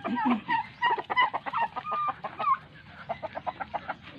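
Backyard chickens clucking: many short, overlapping clucks and calls, with a quick run of clucks in the second half.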